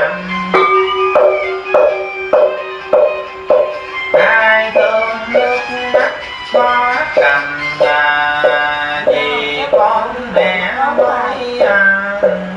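Background music with a steady beat of strikes, a little under two a second, under a sustained melody.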